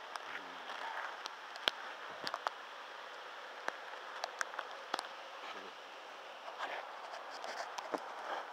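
Steady hiss of rain falling on the woods, with scattered sharp ticks and rustles as the camera is handled.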